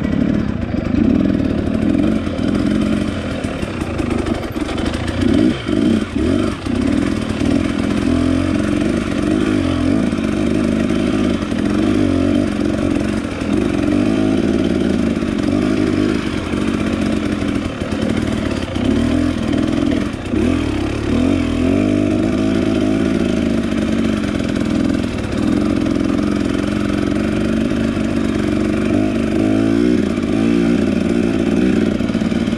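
Husqvarna dirt bike engine running as it is ridden along a narrow, rough trail, its revs rising and falling with the throttle, with a few brief dips where the throttle is rolled off.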